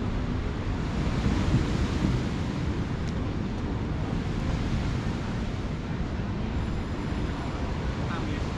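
Steady rushing noise of wind buffeting the microphone mixed with surf washing onto the shore, swelling slightly a second or two in.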